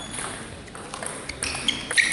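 Celluloid/plastic table tennis ball being struck back and forth in a rally: sharp clicks of ball on bat and table, a few in the second half and the loudest near the end.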